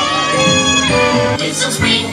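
Parade music with singing voices, playing loudly and continuously.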